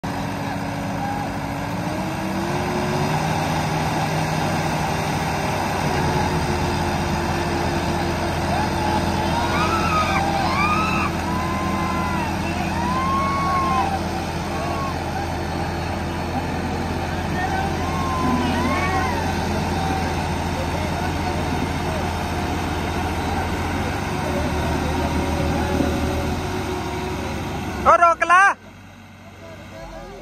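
Two tractor diesel engines, a Sonalika 750 and a New Holland 3630, running hard against each other in a tug-of-war, revving up in the first few seconds and then holding a steady pitch under load. Men's voices shout over the engines, and the engine sound breaks off suddenly near the end.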